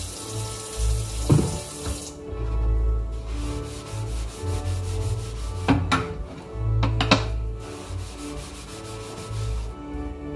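Kitchen tap running into the sink and shut off about two seconds in, then a wooden cutting board being scrubbed, with a few sharp knocks of wood and dishware. Background music plays throughout.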